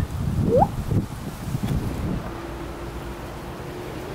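Wind rumbling on the microphone outdoors, with a short rising tone about half a second in and a faint steady hum in the second half.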